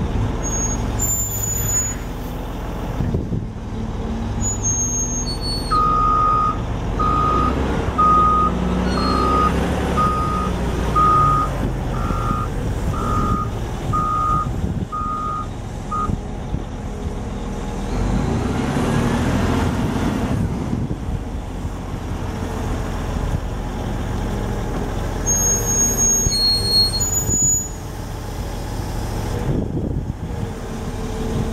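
Caterpillar 980K wheel loader's C13 diesel engine running, with its backup alarm beeping about once a second for some ten seconds while the loader reverses. The engine note swells briefly after the beeping stops, and a few brief high squeaks come near the start and near the end.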